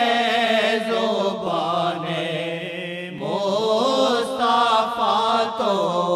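Naat recited in a chanting style, long held notes with wavering pitch that sink in loudness midway and swell again about three seconds in.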